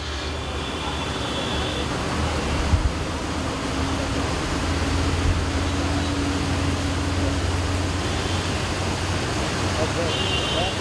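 Rain and traffic on a wet city road: a steady hiss of rain and tyres on wet asphalt over the low rumble of passing truck and car engines, with a brief knock about three seconds in.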